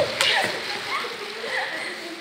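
Audience applauding, a steady patter with a few voices and laughter mixed in.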